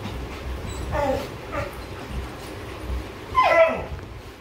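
Two dogs play-wrestling, giving short whimpering yips about a second in and a louder whine that falls in pitch near the end, over a steady low rumble.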